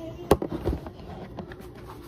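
A few sharp knocks or clacks, the loudest about a third of a second in and a smaller one a little later, over a low household background.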